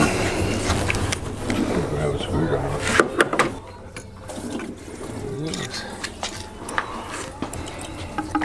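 Screwdriver prying the thermostat housing off a 5.7L Hemi engine, with sharp metal clicks and scrapes, loudest about three seconds in. Coolant is trickling and splashing out of the opened housing.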